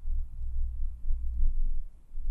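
Low, uneven rumbling thuds of handling noise on the microphone as the handheld camera is moved about.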